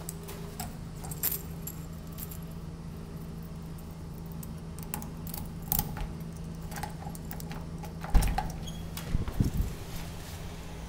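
A bunch of keys jangling and clicking in a door lock as the unit's door is unlocked, with a louder thump about eight seconds in as the door is opened and a few low knocks near the end. A steady low hum runs underneath.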